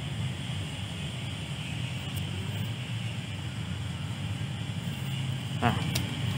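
A steady low rumble of background noise with nothing else distinct, and one short spoken word near the end.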